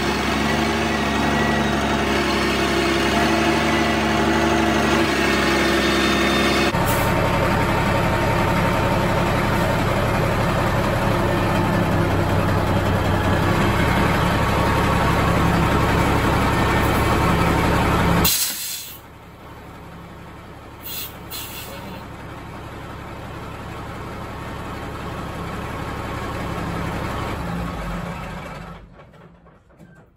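Diesel engine of a 1983 Kenworth K100 cabover truck running steadily as the truck is backed into a shop. About two-thirds of the way through, the sound drops suddenly to a much quieter, uneven hum that slowly swells and then fades near the end.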